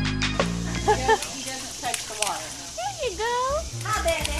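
A piece of keyboard music cuts off just after the start. Then a baby's wordless vocalizing follows: several short coos and squeals that slide up and down in pitch.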